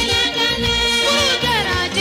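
Music: a song with ornamented melodic lines that glide down in pitch, over a steady bass and drum beat.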